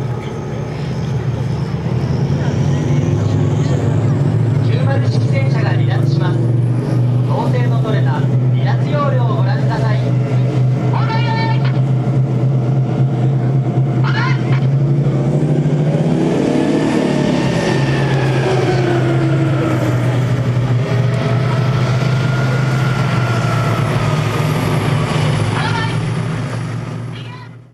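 A Type 90 main battle tank's diesel engine running steadily with a deep, even hum as the tank drives. People's voices come and go over it.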